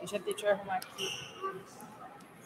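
Low, indistinct voices with several light knocks and clicks in the first second, from objects being handled on a table.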